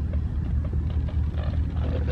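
Wind buffeting the camera's microphone: a steady, fluttering low rumble.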